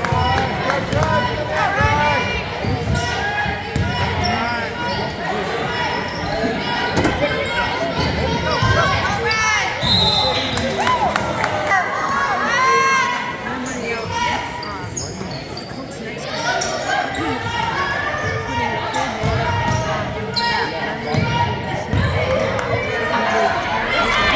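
Basketball game sounds in a reverberant school gym: the ball bouncing on the hardwood court, sneakers squeaking on the floor, and players and spectators calling out.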